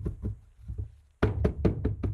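A small planter mold filled with wet concrete being knocked repeatedly against a tabletop, tapped out to settle the mix and work air bubbles out. A few faint thuds come first, then about a second in a quick run of sharp knocks, roughly six a second.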